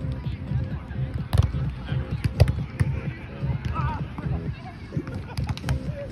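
Volleyball being hit by hands and forearms during a rally, sharp slaps about a second and a half in and again a second later, with lighter hits near the end.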